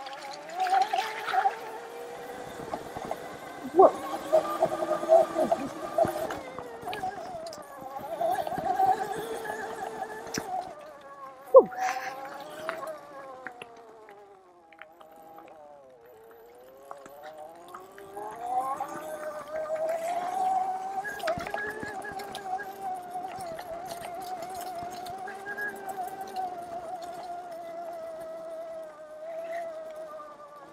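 Oset 24R electric trials bike's motor whining, its pitch rising and falling with speed: it drops away about halfway through as the bike slows, then climbs again as it picks up speed. A couple of sharp knocks from the bike over bumps, the loudest about twelve seconds in.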